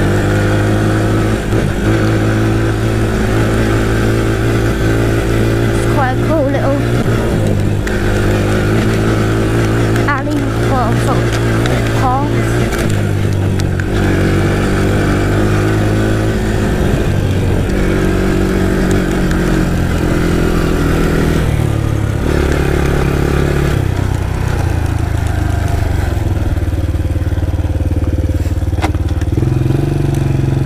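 Yamaha Raptor 700R quad's single-cylinder engine running under way at a fairly steady pitch. The engine note drops and picks up again several times as the throttle or gear changes.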